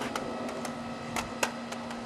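RipStick caster board rolling and twisting on a concrete driveway, its wheels and deck giving a few scattered light clicks.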